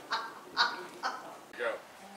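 A person laughing in four short chuckles about half a second apart, quieter than the talk around them.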